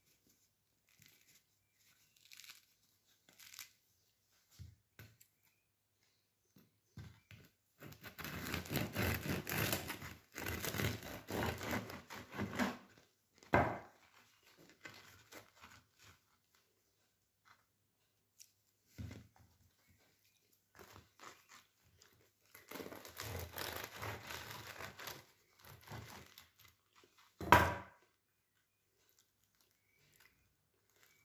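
Crisp crust of a freshly baked ciabatta crackling and tearing as hands break the loaf open. There are two long spells of crackling, each ending in a sharp crack.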